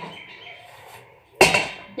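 A single sharp knock about a second and a half in, typical of a plastic cutting board being put down on a stone countertop.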